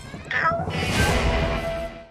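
A closing trailer music sting that swells and holds, with a short, high, falling squeal near the start.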